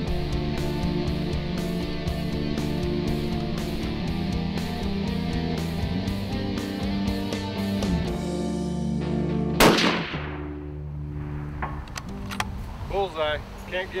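Rock music with guitar and a steady beat, fading out; then, about ten seconds in, a single loud rifle shot from a Gunwerks LR-1000 in 7mm Long Range Magnum, a zero-check shot, its echo trailing off.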